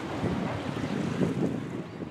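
Wind buffeting the microphone at the seafront, an uneven low rumble, with small waves lapping in the background.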